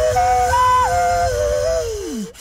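Beatboxer making two notes at once into the microphone: a steady held low note with a higher melody stepping up and back down above it. Near the end the low note glides down.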